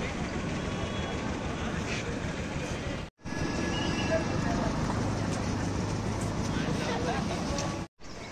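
Outdoor street ambience: steady traffic noise with background voices. It cuts off abruptly about three seconds in and resumes as open-air ambience with distant voices, then cuts off again near the end.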